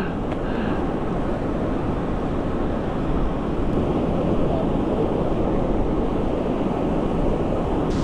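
Steady rush of wind over the microphone of a camera riding on a moving e-bike, with the sound of surf breaking along the beach underneath.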